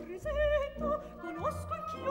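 Operatic soprano singing short phrases with a wide vibrato over orchestral accompaniment. One phrase slides up to a higher held note about a second and a half in.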